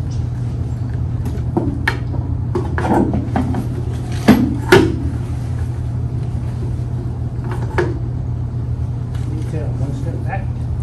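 Wooden flagpoles knocked into metal floor stands as the colors are posted: a few sharp knocks, the loudest two close together about four and a half seconds in, over a steady low hum.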